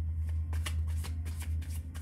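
A deck of tarot cards being shuffled by hand: a quick run of soft card clicks and flutters, busier from about half a second in, over a steady low hum.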